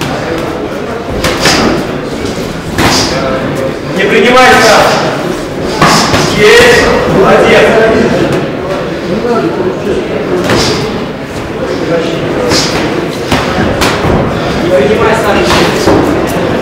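Boxing gloves landing punches in a bout: irregular sharp smacks and thuds every second or two, echoing in a large hall. Men's shouting voices come through, loudest in the middle.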